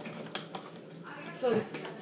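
A few light, sharp clicks and taps of kitchen handling at the counter, scattered through the moment, with a short spoken word about one and a half seconds in.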